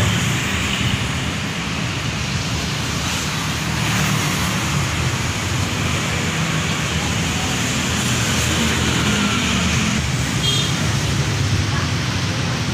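Steady street traffic noise, a continuous low rumble of passing vehicles.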